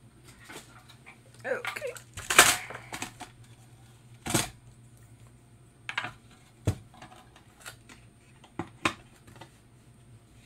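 A wooden tabletop easel being set up and a hardboard painting panel set and adjusted on it: a run of knocks and clatters of wood and board, the loudest a little over two seconds in, followed by several single sharp knocks spread through the rest.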